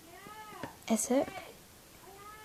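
A cat meowing: one drawn-out meow that rises and falls in pitch, then a louder, shorter call about a second in.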